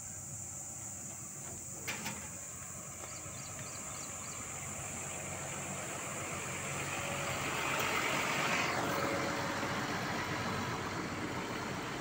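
Tata trailer truck's diesel engine running, growing louder over several seconds as the truck and the microphone come closer together.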